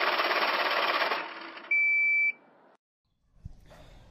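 Sound effects of an animated channel-logo intro: a dense electronic buzzing rattle that fades out after about a second, then a short, loud, high-pitched beep.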